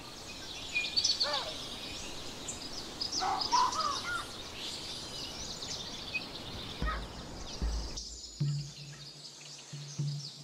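Songbirds chirping and calling in a forest ambience, with many quick high chirps and a few curving whistled calls. Two low thuds come near the end, followed by a steady low hum.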